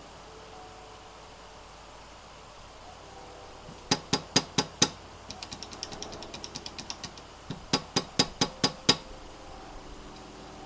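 Gateron Red linear switches, seated in a bare aluminium plate with no PCB or keycaps, being pressed and released. About four seconds in come five quick clacks, then a run of lighter, faster clicks, then six more clacks. This early plate-only stage doesn't sound very convincing yet.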